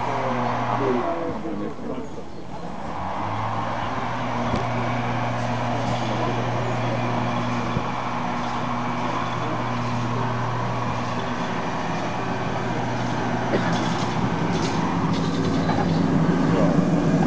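Electric rack railcar of the Drachenfelsbahn, a metre-gauge Riggenbach cog railway, climbing toward the station with a steady motor hum. The rail and rack noise grows louder near the end as the railcar pulls in close.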